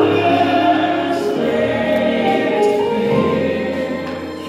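Live gospel worship music: held keyboard chords over steady bass notes, with voices singing along, dipping slightly in loudness near the end.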